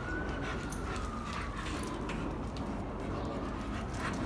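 A siren wailing in the distance: one long, smooth high tone that peaks early and then slowly falls and fades near the end, over a steady low hum of outdoor noise.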